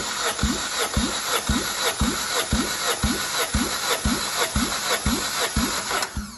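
Mitsubishi 4A92 1.6 L four-cylinder engine spun over by its starter motor for a cold compression test on cylinder one. The starter runs steadily, with a regular thump about twice a second as the tested cylinder comes up on compression, and cuts off suddenly at the end.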